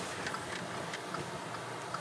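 A car's turn-signal indicator ticking steadily inside the cabin, over the low hum of the car.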